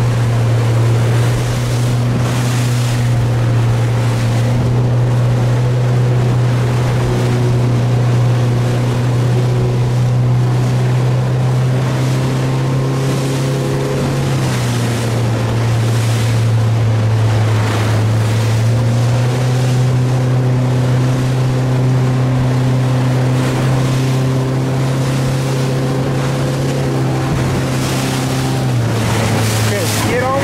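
Motorboat engine running steadily under way, its pitch dropping about halfway through, rising again about four seconds later and dropping once more near the end, over the hiss of wind on the microphone and choppy water.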